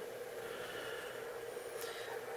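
Steady hum and faint hiss of a cooling fan running, with one steady tone throughout.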